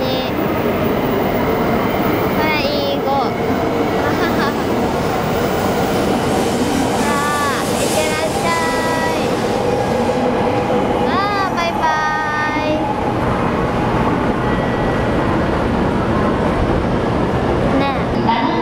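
E5 series Shinkansen cars sliding past the platform as the train pulls out, a loud steady rush of wheels and running gear. Brief voices are heard over it partway through.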